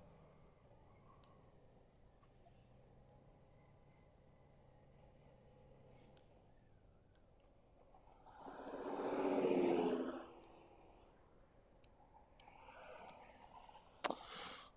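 A vehicle passes on the road, its sound rising and fading away over about two seconds, eight seconds in; a fainter second vehicle passes near the end, over a low steady hum.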